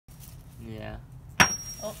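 A single sharp hammer blow on a crystal rock, followed by a brief high ring. The rock does not break: "a hard rock".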